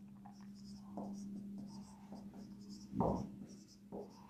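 Faint scratchy strokes of a marker pen writing on a whiteboard, with a steady low hum underneath and one brief louder sound about three seconds in.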